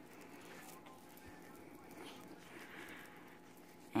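Faint rustling and soft handling sounds of a cloth wipe being rubbed over a toddler's skin.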